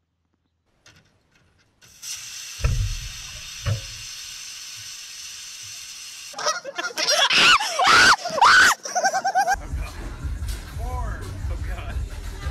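A steady hiss starts about two seconds in, with two low thumps soon after. Then several seconds of loud screaming and yelling voices, followed by a low rumble.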